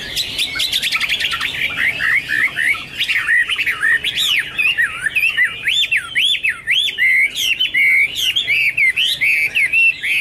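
Chinese hwamei (Garrulax canorus) singing a loud, varied song. It opens with a quick run of short notes, then from about four seconds in gives repeated whistled notes that sweep up and down.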